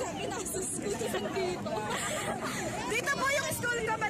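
Crowd of fans chattering and calling out, many overlapping voices at once, a little louder around three seconds in.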